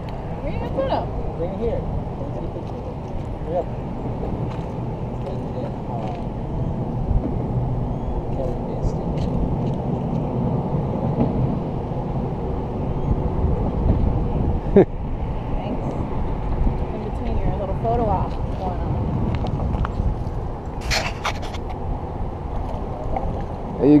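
Steady low outdoor rumble of wind and traffic, with faint voices now and then and a single sharp click about fifteen seconds in.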